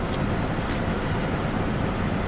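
Steady background rumble of road traffic.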